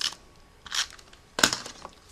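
Cardstock being handled and pressed down by hand: three short rustles about three quarters of a second apart, the last a sharp click.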